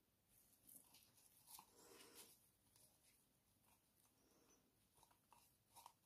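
Near silence, with a few faint soft clicks and rustles of small handling noises, twice in short clusters.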